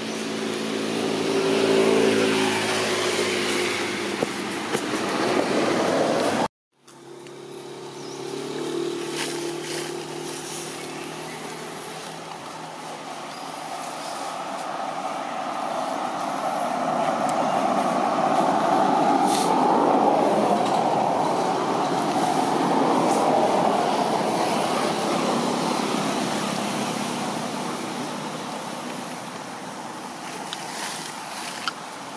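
Motor vehicle traffic: an engine runs with a steady hum and cuts off suddenly about six seconds in. Engine hum follows, and then a long rush of vehicle noise that swells and slowly fades as it passes.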